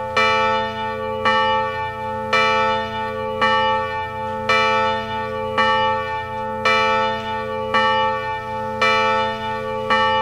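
A single church bell tolling, struck about once a second at the same pitch, each stroke ringing on into the next.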